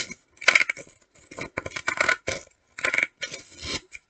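Scissors cutting through folded paper: a run of short snips in several clusters, with brief pauses between.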